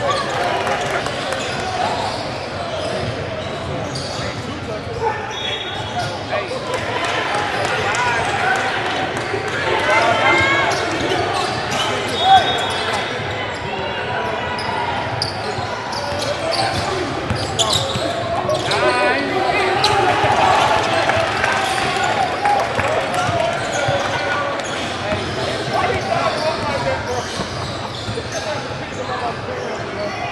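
Basketball dribbled on a hardwood gym floor amid crowd voices and shouts, echoing in a large gymnasium, with one sharper thud about twelve seconds in.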